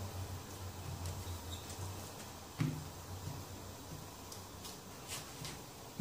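Wooden rolling pin rolling dough out on baking paper on a table: faint rubbing and paper rustle, with a single knock about two and a half seconds in.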